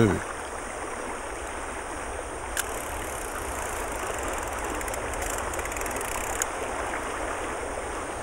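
Fast, turbulent river water rushing steadily through a rocky pool, with a single light click about two and a half seconds in.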